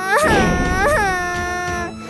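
A high-pitched, drawn-out crying wail, held for nearly two seconds, with a sudden jump in pitch about a second in.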